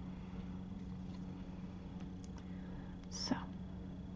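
Quiet steady low hum, with one brief soft sound a little over three seconds in.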